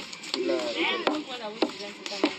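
Wooden pestle pounding cooked taro paste in a wooden bowl: three dull thuds about half a second to a second apart, with voices talking between the strokes.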